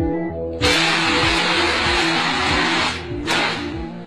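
A barbecue grill going up in a fireball: a sudden loud rush of noise about half a second in lasts about two seconds, then a second shorter rush comes near the end. Background music with a steady beat plays throughout.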